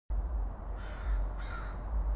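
A bird calling twice, short harsh calls about half a second apart, over a steady low outdoor rumble that starts suddenly at the fade-in.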